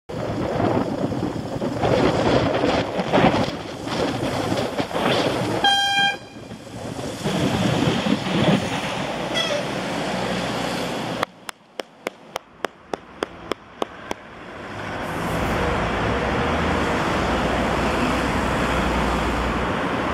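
Wind and traffic noise on a bicycle-mounted camera riding along a city street. A short single horn toot comes about six seconds in. Later there is a run of about a dozen even ticks, roughly three a second, before a steady low rumble takes over.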